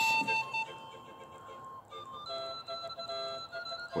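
Background music: a simple melody of clear, held single notes, louder in the first second and softer after that.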